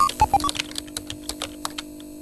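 Computer-keyboard typing sound effect: a quick run of key clicks as text is typed out on a retro terminal screen, over a steady low hum, with a few short electronic blips right at the start.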